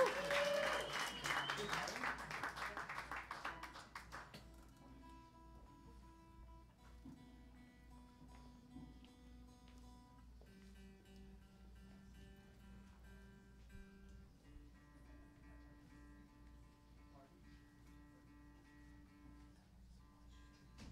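Audience applause and cheers fading out over the first four seconds, leaving a band's soft sustained chords that change every few seconds over a faint steady hum.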